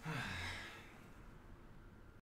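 A man's sigh: one breathy exhale lasting under a second, falling slightly in pitch.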